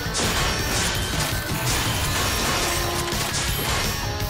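Animated robot-transformation sound design: a music track under repeated metallic clanks and crashes as vehicle parts swing and lock into place.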